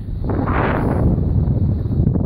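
Wind buffeting a phone's microphone: a loud, steady low rumble that swells briefly about half a second in.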